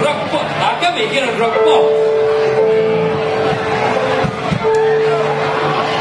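A live rock band with electric guitars, and a male singer holding two long notes, the second starting after a short break a little past the middle.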